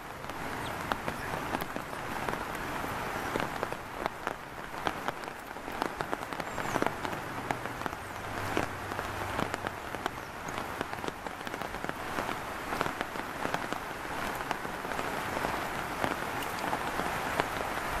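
Steady rain: an even hiss with many small, sharp taps of drops.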